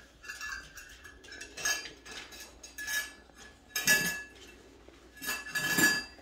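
Metal spoon clinking and rattling against a small stainless steel bowl, which rings after each hit. There are several clinks, the loudest about four seconds in and a cluster near the end.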